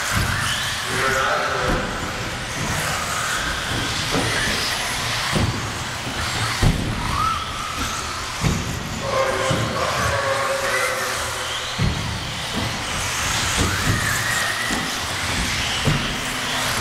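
1/10-scale 4WD electric RC racing buggies running hard: motors whining and rising and falling in pitch as they speed up and slow down, with several sharp knocks of cars landing from jumps or hitting the track boards.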